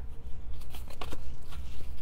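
Cardstock being folded and pressed by hand, a few faint crinkles and light taps, over a steady low hum.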